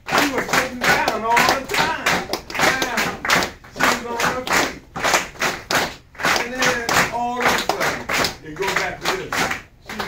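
Hands clapping a steady beat, about three to four claps a second, with a voice over it holding drawn-out notes.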